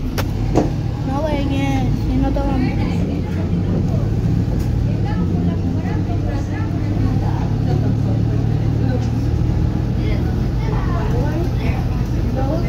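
Inside a Volvo B290R city bus under way: a steady drone from the engine and the road, with a couple of sharp knocks from the cabin near the start.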